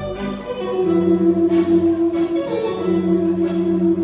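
Wurlitzer theatre pipe organ playing a waltz, with long held notes under a slow melody.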